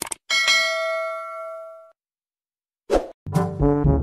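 A click, then a bell-like chime that rings on and fades away over about a second and a half. About three seconds in, music with brass comes in.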